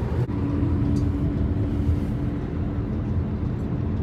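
Steady low rumble of road and engine noise heard inside the cabin of a Jeep Compass 2.0 diesel driving at highway speed, with a faint steady hum over it.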